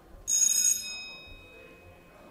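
A single bright bell-like ring, sounding suddenly about a third of a second in and fading out over about a second.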